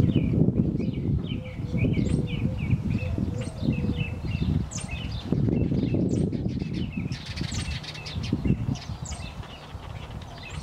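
Small birds chirping repeatedly, short high chirps coming several times a second, over a low, uneven rumble.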